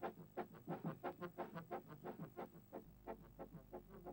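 Background brass band music, fairly quiet, playing quick short notes at about five a second.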